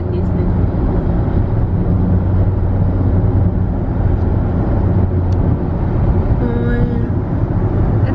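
Steady low road and engine rumble heard from inside a moving car.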